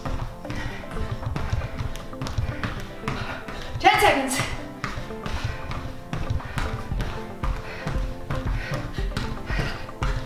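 Quick, repeated light taps of sneakers on a BOSU ball's rubber dome and the carpet around it, over background music with a steady beat; a short vocal sound breaks in about four seconds in.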